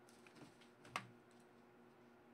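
A few faint computer keyboard and mouse clicks, one sharper than the rest about a second in, over a faint low steady hum.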